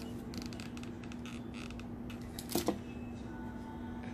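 Hands working satin ribbon and a hot glue gun: a run of faint clicks and rustles, then one brief louder sound about two and a half seconds in, over a steady low hum.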